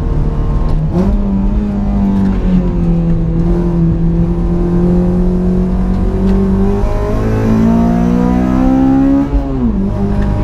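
8th-generation Honda Civic's four-cylinder engine heard from inside the cabin under hard track driving. The engine note jumps up in pitch about a second in, climbs slowly through long pulls, and drops sharply just before the end as the throttle comes off.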